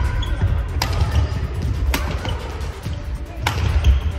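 Badminton rackets striking a shuttlecock three times during a rally, sharp smacks roughly a second apart, over background music.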